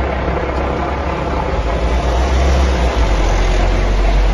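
Mercedes-Benz Sprinter ambulance van's engine running as it drives slowly past close by, a low rumble that grows loudest near the end as the van draws alongside.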